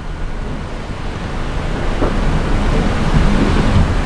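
A loud, steady rushing noise with a low rumble and no voice, swelling gradually through the pause.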